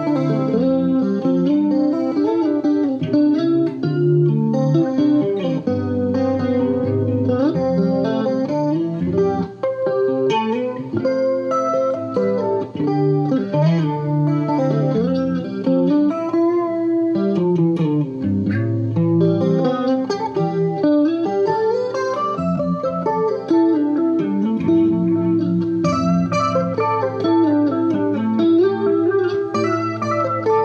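Electric guitar played through a clean-toned Vox AC10 tube amp, running a melodic riff of many flowing notes over low bass notes, coloured with chorus and delay trails.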